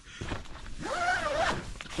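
Tent door zipper being drawn open in one long continuous rasp lasting most of two seconds.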